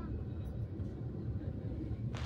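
Steady low rumble of a moving passenger train, heard from inside an air-conditioned coach.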